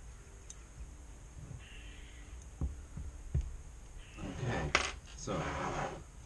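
Small metal parts clinking and rattling as they are handled on a desk. There are a few light knocks, then about four seconds in a busier spell of rattling and clicks, with one sharp click the loudest.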